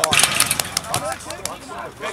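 A brief burst of noise with a few sharp clicks at the very start, then faint voices calling across a football pitch, fading toward the end.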